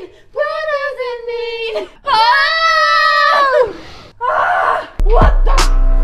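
A woman's drawn-out, strained cries of effort during a set of Smith machine split squats: two long wavering cries, then a short breathy one. Music with a steady beat starts suddenly about five seconds in.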